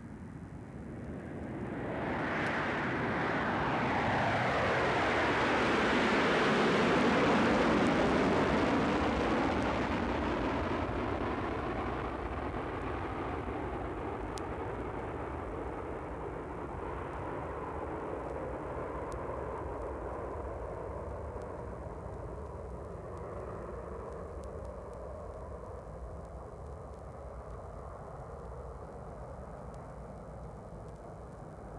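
Airliner passing low overhead: the noise swells over several seconds, peaks about seven seconds in with a falling Doppler sweep in pitch, then fades slowly into a long, steady distant drone.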